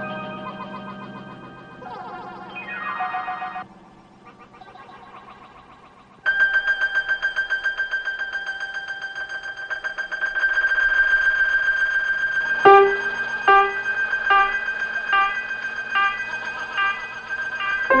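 Early electronic tape music built from recorded and tape-manipulated instrument tones. Held tones slide upward in pitch a few seconds in. A loud, sustained, pulsing high tone enters about six seconds in, and from about thirteen seconds it is joined by a run of struck, ringing notes.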